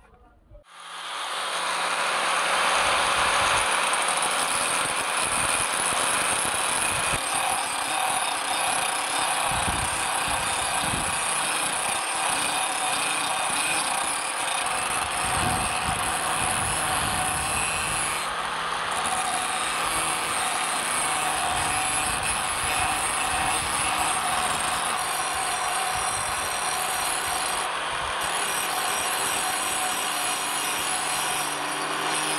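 Angle grinder spinning up about a second in, then running steadily as its disc grinds the edge of a steel motorcycle brake disc.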